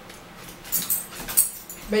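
Eating sounds: chewing and lip smacks in a few short, sharp bursts, the loudest about a second and a half in.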